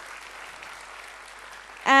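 Audience applauding steadily after a performer is introduced; the announcer's voice comes back in right at the end.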